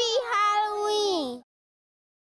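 A high-pitched meow: a short call, then a long drawn-out one that falls in pitch at its end and cuts off suddenly.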